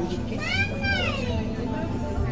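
A child's high-pitched squeal that rises and then falls, lasting under a second, about half a second in, over low background voices.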